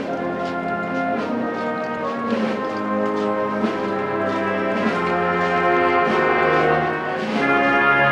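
Brass band playing a Holy Week processional march in long held chords, swelling a little near the end.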